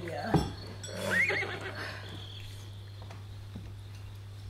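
Offstage horse sound effect of a stallion shut in its stable: a sharp thump about a third of a second in, then a short neigh about a second in. It is the penned stallion kicking at the wall and whinnying.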